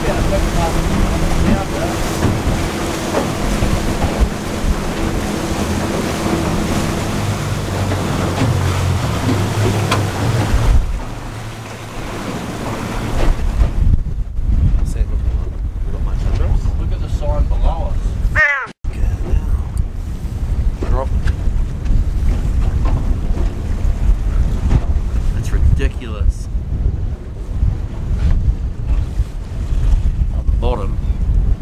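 A boat's Yamaha outboard running under way with water rushing past the hull, the engine and rush dropping away about eleven seconds in as the boat slows. After that, gusty wind buffets the microphone over the sea.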